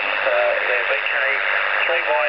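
A station's voice received on 40 metres through the OzQRP MDT 7 MHz double-sideband direct-conversion transceiver: thin, narrow radio speech over a steady hiss of band noise.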